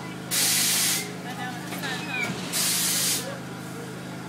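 Swinging boat ride with a steady machine hum underneath and two loud hisses of released air, each about two-thirds of a second long and about two seconds apart, starting and stopping abruptly. Children's voices are faint between the hisses.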